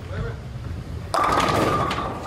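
A bowling ball rolling down the lane with a low rumble, then crashing into the pins about a second in. A sustained clatter follows with a steady ringing tone, and one pin is left standing.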